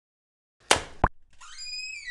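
Animation sound effects: two short sharp clicks about a third of a second apart, then a high, thin squeak that rises in pitch and then holds near the end.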